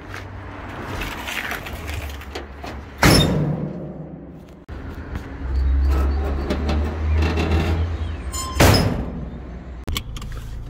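Two loud door slams, one about three seconds in and one near the end, with smaller knocks and handling noise between them and a low rumble before the second slam.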